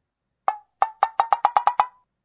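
A series of short, pitched wooden-sounding ticks like a wood block. Two come spaced apart, then a quick run of seven at about eight a second.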